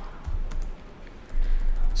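Typing on a laptop keyboard: scattered light key clicks, with a low rumble in the second half.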